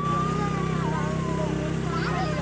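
A vehicle engine running steadily as it travels, a constant low hum, with a voice holding one long, wavering sung note over it.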